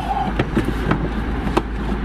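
Van engine idling at low speed, heard from inside the cab, with a few short sharp clicks scattered through it.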